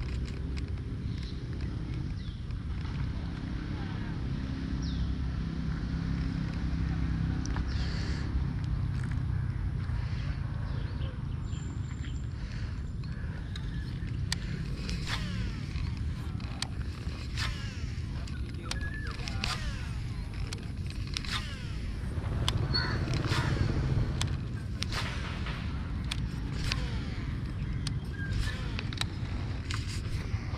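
Steady low rumble of wind on the microphone, swelling louder for a couple of seconds near the end, with many short sharp clicks and a few brief high calls over its second half.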